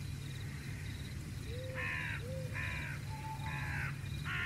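Crows cawing: three short, harsh caws about a second apart, the first nearly two seconds in, over a low steady hum.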